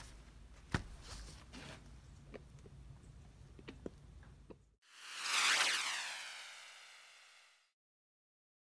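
Light clicks and handling noise as a gloved hand moves an upturned laptop on a table. The sound then cuts out, and an added electronic swoosh effect made of many tones sweeps down in pitch, swelling and then fading over about two and a half seconds.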